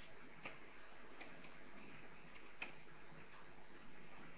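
Faint, scattered keystrokes on a computer keyboard as a web address is typed: a handful of light clicks spread irregularly over a low background hiss.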